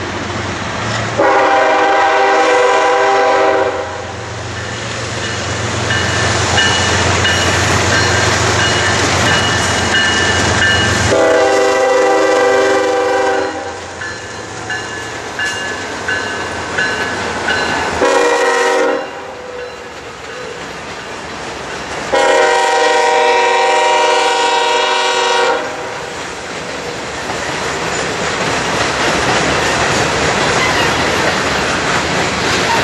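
Norfolk Southern freight diesel locomotive sounding its multi-chime air horn in the long, long, short, long grade-crossing signal as it passes close by, over the low rumble of its diesel engine and a thin high wheel squeal. Near the end the freight cars roll past, clicking over the rail joints.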